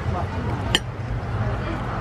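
A single sharp clink of a metal fork against a ceramic breakfast plate about three-quarters of a second in, over a steady low background rumble.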